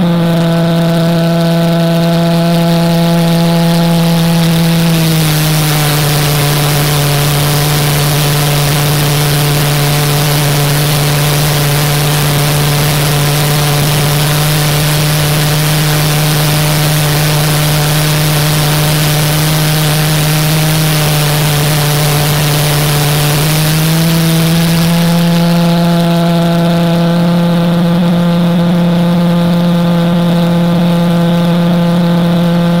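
Pulsejet engine running continuously: a loud, steady buzzing drone with strong overtones. About five seconds in its pitch drops slightly and a rushing hiss rises over it; about twenty-four seconds in the pitch climbs back and the hiss fades.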